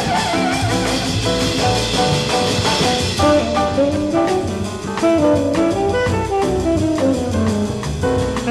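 Jazz quartet playing: tenor saxophone lines over piano, double bass and drums, with a steady beat on the drums.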